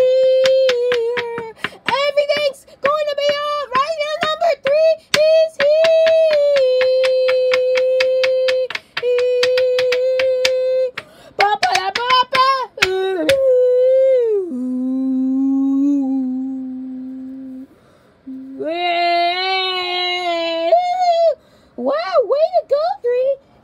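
A high voice singing long, held wordless notes, with a fast, even clicking beat behind the first half. About two-thirds through, the voice slides down to a low held note, stops briefly, then sings another long note.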